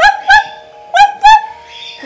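Plush toy dog's electronic barking, set off by pressing the toy: two pairs of short, high yips, the second pair about a second after the first.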